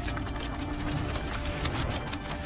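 Sound design for an animated video intro: a low rumble under rapid, irregular clicks and crackles, with a faint held tone in the first second.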